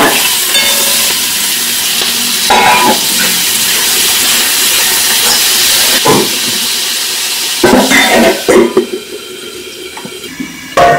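Food tipped from a colander into hot oil in an iron kadai, sizzling loudly, with a metal spatula knocking and scraping against the pan a few times. The sizzle falls away sharply near the end.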